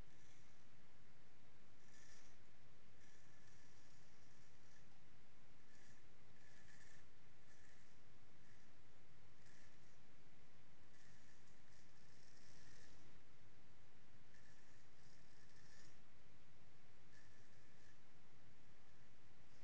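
An 8/8 Wade & Butcher straight razor with a heavy, more-than-quarter-hollow grind, scraping through lathered stubble. It makes a faint, crisp rasp on each short pass, in a run of strokes with pauses between. The heavy grind still gives audible feedback: it is not silent.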